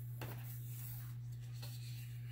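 Hands sliding over and settling a large page of heavy cardstock in a spiral-bound colouring book, a few faint papery rubs over a steady low hum.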